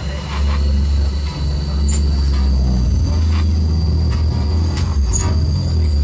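Live experimental electronic pop: a loud, steady low drone, with a thin high tone held above it and short, scattered high electronic blips.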